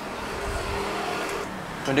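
Steady background noise: a low hum with a faint rumble that swells slightly about half a second in, with no distinct sound event.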